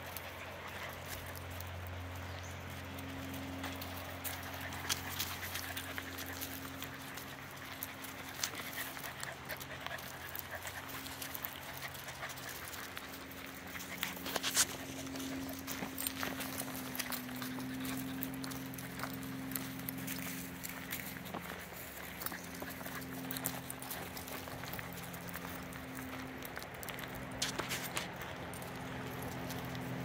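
Footsteps crunching on a gravel path and forest ground, with scattered sharp crunches and clicks over a steady low hum.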